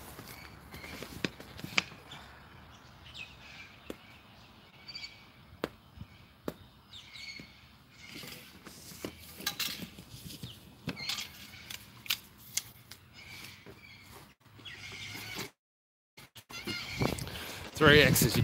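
Footsteps in flip-flops on grass, then arrows being pulled out of a foam archery target, heard as scattered light knocks, scrapes and clicks.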